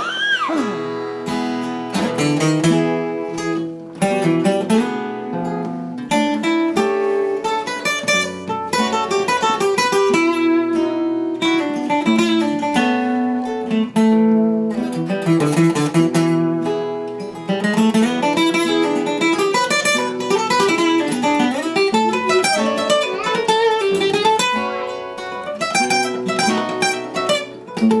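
Acoustic guitars playing an instrumental break between sung verses: strummed chords under a busy line of picked single notes.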